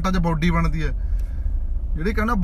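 Low, steady rumble of a car heard from inside its cabin, with a man's voice over it for the first second.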